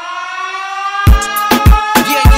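DJ mix music. The drums drop out under a held tone that rises slowly in pitch, then the full beat with kick drum comes back in about a second in.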